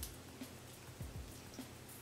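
Quiet fiddling with a small metal padlock and its key: a light click right at the start, then a few faint soft knocks as the key is worked toward the lock.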